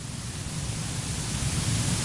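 Steady hiss of background noise, growing slowly a little louder, in a pause with no speech.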